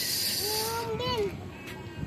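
A short burst of high hiss in the first second, overlapped by a high-pitched voice calling out in the background. Then quieter outdoor background with a few faint ticks.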